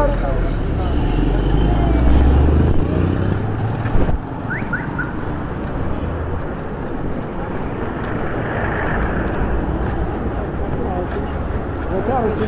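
Busy street traffic: vehicle engines running and passing, with a heavy low engine rumble for the first few seconds and a sharp knock about four seconds in.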